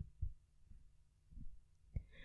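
Four faint low thumps picked up by a handheld microphone during a pause in speech.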